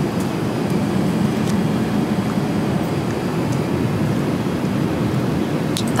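Jet airliner cabin noise in flight: the steady low rush of engines and airflow heard from inside the cabin, with a few faint clicks.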